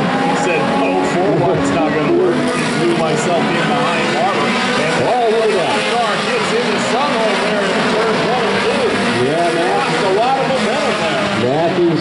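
Several stock car engines racing together, overlapping, their pitch rising and falling again and again as the cars accelerate and lift through the turns.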